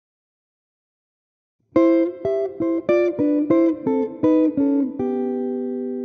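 Budagov Strat Pro electric guitar played through the Amplitube amp simulator, playing a jazz chord-melody intro. Silence for the first second and a half or so, then a run of plucked notes and chords about three a second, ending on a chord left ringing from about five seconds in.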